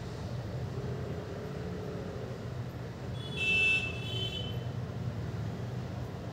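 A steady low background rumble, with a short, high-pitched tone a little over three seconds in.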